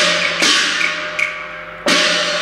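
Cantonese opera accompaniment between sung lines: loud percussion strikes that ring on, at the start, about half a second in and again near the end, with lighter wood-block clicks between them, over a held note from the melody instruments.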